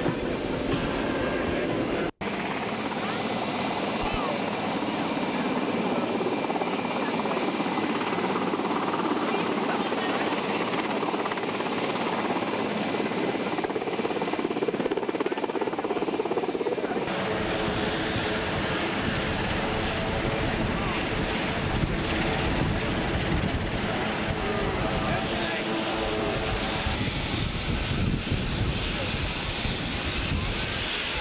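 Steady aircraft engine noise on an airfield, with crowd voices mixed in. The sound drops out for a moment about two seconds in, and about seventeen seconds in it changes to a steady hum with several tones in it.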